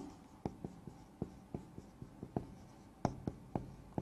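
Marker writing on a whiteboard: an irregular run of short ticks and strokes as a word is written out.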